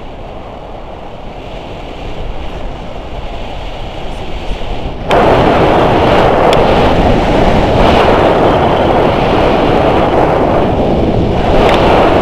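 Wind rushing over the microphone of a camera held out in the airflow of a tandem paraglider in flight. About five seconds in it jumps suddenly much louder and stays that way.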